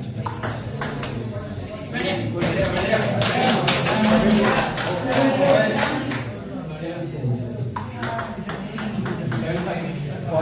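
Table tennis rally: the celluloid ball clicking sharply off paddles and the table in quick runs of hits, with spectators' voices over it.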